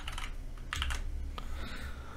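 Computer keyboard typing: a few scattered keystrokes.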